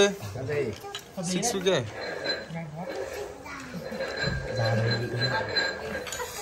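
Several people talking at once around a dinner table, no one voice in the lead. A faint steady high-pitched tone runs under the voices from about two seconds in.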